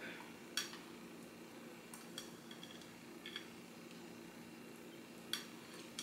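Faint, scattered clicks of dishware and utensils on a plate as chopped bell pepper is sprinkled by hand onto lettuce-leaf wraps, about half a dozen light taps over a low steady room hum.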